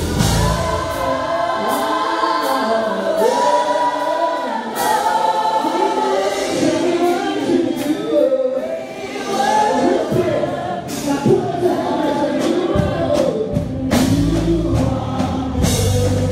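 Live gospel singing through a PA: lead voices with a microphone, with other voices joining in. The bass and drums drop away just after the start, leaving mostly voices, and the full band comes back in strongly near the end.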